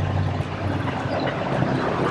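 Steady noise of city street traffic: a low rumble of engines and tyres.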